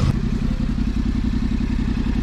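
Motorcycle engine idling with a steady, even pulse. There is a short sharp click right at the start.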